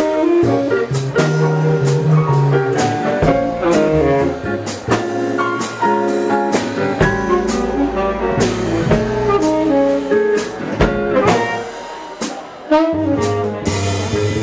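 Live jazz combo: a tenor saxophone playing a running melodic line over a drum kit with cymbals. Near the end the band drops down briefly, then comes back in on a sharp drum hit.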